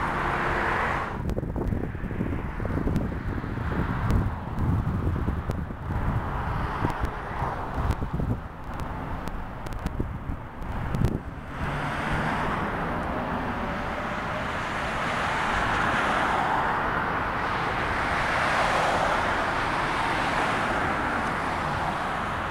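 Wind buffeting the microphone with a low rumble for about the first half. Then road traffic passing close by on a multi-lane street, with a steady tyre-and-engine hiss that swells twice as cars go past.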